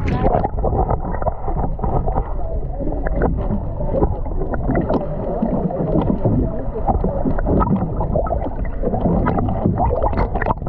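Muffled underwater sound picked up by an action camera held below the surface: a steady low rumbling wash of water with many small crackles and clicks.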